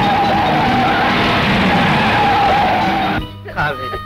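Film soundtrack of an open jeep driving fast: loud engine and road noise with a wavering high tone, mixed with background score. It cuts off sharply about three seconds in, where a voice begins.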